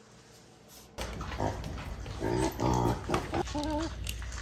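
Pot-bellied pig grunting and eating noisily from a feeding tray, starting about a second in, with a run of louder grunts in the middle and a short wavering call near the end.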